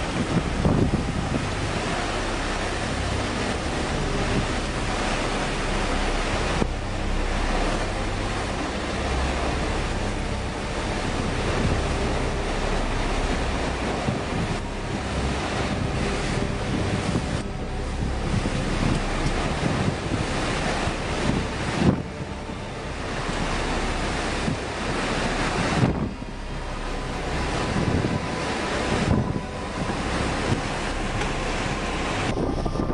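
Severe cyclone wind with driving rain, blowing in gusts and buffeting the microphone, with a few harder gusts in the second half.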